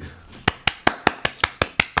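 One person clapping hands in steady applause, about five claps a second, starting about half a second in.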